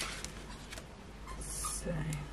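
A paper card frame being handled and slid onto a cutting mat, with a short papery hiss near the end.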